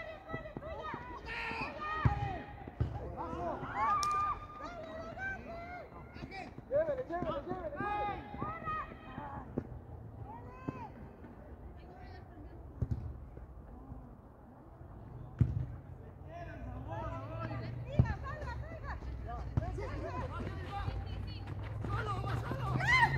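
Players' voices calling and shouting across an open football pitch during play, with a few sharp thuds from the ball being kicked.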